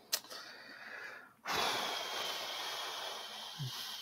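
A man breathing heavily close to a microphone while thinking: a shorter, softer breath, then a longer, louder breath out lasting over two seconds.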